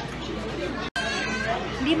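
People talking over the chatter of a busy restaurant, the sound cutting out for an instant about a second in.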